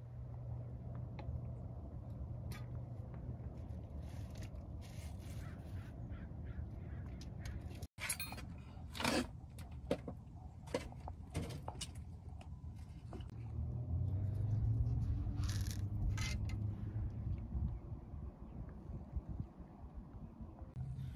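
Outdoor ambience: a low steady rumble with scattered short, sharp calls from a bird, a few of them close together in the middle and again near the end. The sound drops out for an instant about eight seconds in.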